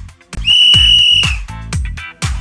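A single loud whistle note held for about a second, over upbeat dance music with a steady kick drum of about two beats a second.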